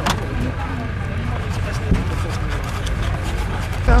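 An engine running steadily, with indistinct voices of people talking nearby.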